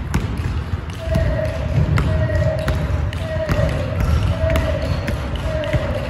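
A basketball being dribbled on a wooden gym floor: sharp bounces, settling from about a second in into a steady rhythm of roughly two a second, each followed by a short ringing tone, over a steady low rumble.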